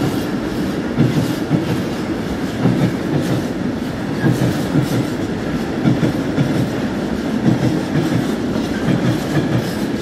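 Freight train of tank wagons rolling past at close range: a continuous rumble with the wheels clacking over the rail joints in repeated clusters as each wagon's bogies pass.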